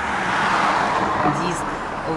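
A car driving past on the street, its tyre and engine noise swelling and then fading, loudest about a second in, heard from inside a car.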